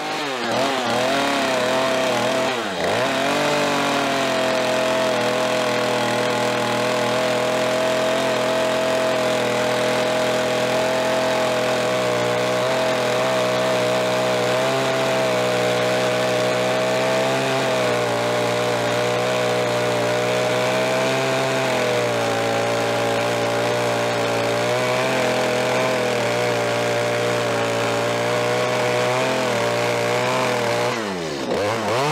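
Gas chainsaw at full throttle cutting into a cabin wall log. The engine pitch dips and picks up twice in the first few seconds, then holds steady through a long cut, sagging again right at the end.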